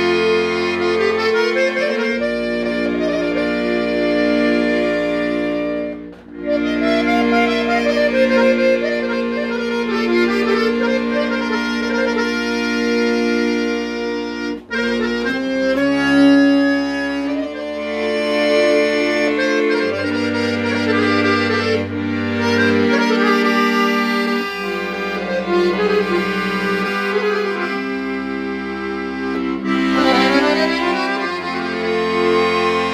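Dallapè chromatic button accordion, just fixed up, played solo: a melody with quick ornaments over held chords. There are two short breaks, about six seconds in and about halfway through.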